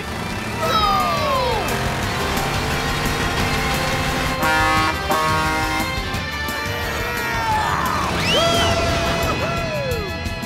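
Animated-cartoon soundtrack: background music mixed with big-rig truck engine sound effects, with gliding cartoon sound effects or cries about a second in and again near the end.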